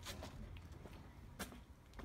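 Faint handling sounds from a child climbing into a parked car: two light clicks about a second and a half apart over a low, steady hum.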